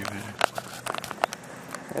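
Handling noise: a run of irregular sharp clicks and knocks as the home-built measuring wheel's display unit is moved and repositioned close to the microphone.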